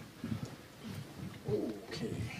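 Soft, irregular low thumps of people getting up from kneeling and shifting about among the seats, with a brief low murmured voice near the end.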